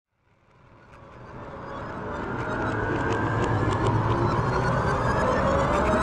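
A low rumble with faint crackles fades in from silence over the first few seconds, then holds steady: a film trailer's sound-design drone.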